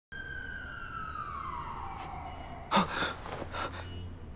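A high siren-like tone starts suddenly and slides steadily down in pitch over about two and a half seconds. A sharp gasp follows, then a few quick, heavy breaths as a man jolts awake.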